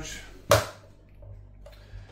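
A single sharp tap or knock about half a second in, over a faint low steady hum.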